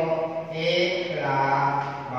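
Only speech: a man talking steadily, his words drawn out in long held vowels.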